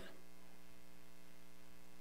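Steady electrical mains hum with a few faint constant tones, low in level and unchanging.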